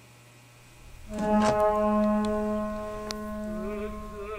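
Faint hiss, then about a second in, a held chord on bowed strings (cello and violin) comes in and sustains, with a few sharp clicks over it. A wavering melody line begins near the end.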